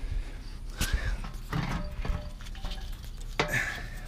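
Light handling noise: a few soft knocks and rustles as a car radiator is picked up and moved, over a low steady hum.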